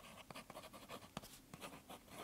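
Fountain pen nib scratching faintly across sketchbook paper in a quick run of short strokes as letters are written.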